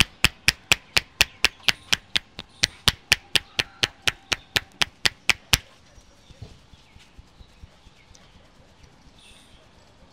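Rapid rhythmic hand slaps on the head during an Indian barber's head massage, about four sharp strikes a second. They stop about five and a half seconds in, leaving only a few faint soft taps.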